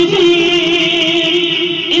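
A man's voice holding one long sung note of an Urdu devotional manqabat, with a slight waver in pitch, breaking off just before the end.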